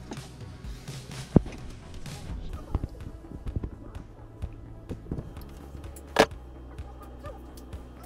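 Small clicks and knocks from hands handling a small fan and its wires, over background music. There is a sharp click about a second and a half in and a louder knock about six seconds in.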